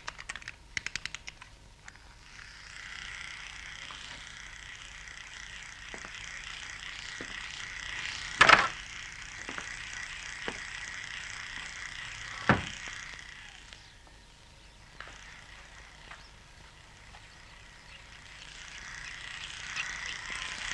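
Electric razor buzzing steadily, dropping away about two-thirds through and returning near the end. Two loud sharp knocks stand out, the first a little before the middle. A short run of rapid clicks opens the sound.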